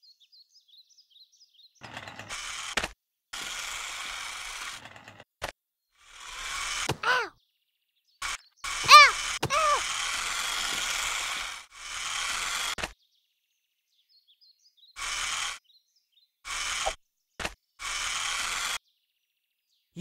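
Cartoon sound effect of a small remote-control toy car's electric motor buzzing in about nine short spurts with silent gaps between them. A couple of squeaky sliding tones come around the middle, and faint bird chirps sound in the quiet gaps.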